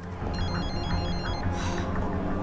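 A mobile phone's electronic ringtone: a quick patterned run of short high beeps that stops about halfway through, over background music with a steady low bass.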